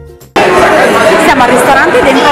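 Background music fading out, then a sudden cut to loud chatter in a busy dining room: several voices talking at once over the room's hubbub.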